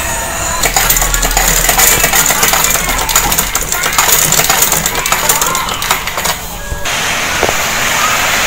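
Singer sewing machine running, stitching the seam of a shirt collar: a fast, steady run of needle clicks over a low hum, starting just under a second in and stopping about seven seconds in.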